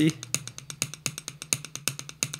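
Sticks tapping a tabletop in a single-stroke roll, alternating right and left hands, about nine even taps a second with some taps accented louder than the rest.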